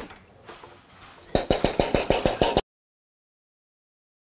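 Metal mixing rods knocking and clinking against a plastic bucket as the solution is stirred: a quick run of about nine sharp clinks, some seven a second, starting about a second and a half in. The sound then cuts off abruptly.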